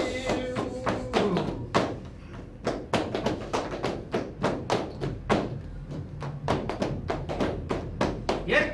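Hands rapping out a flamenco rhythm on a table, about three to four sharp knocks a second, keeping time for the cante. A held sung note fades out about a second in.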